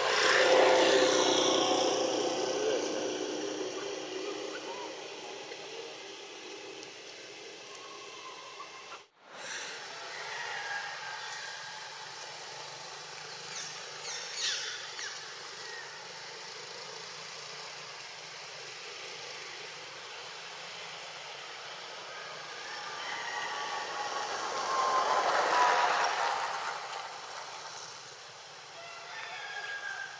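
Outdoor ambience with a steady hiss and two slow swells of motor-vehicle noise passing by, one at the very start and a louder one about 25 seconds in, the second with a faint falling engine tone.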